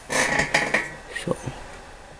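A short spoken word, then two light taps as clear plastic containers are handled on a wooden tabletop.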